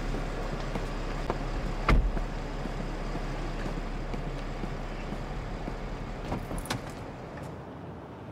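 SUV idling with a steady low hum; a car door shuts with a single sharp knock about two seconds in, and a door latch clicks twice shortly before the end.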